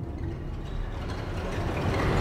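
Low, dark rumble from a horror-trailer sound design that swells steadily louder, building tension.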